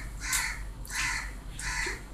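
A crow cawing three times, harsh calls a little over half a second apart.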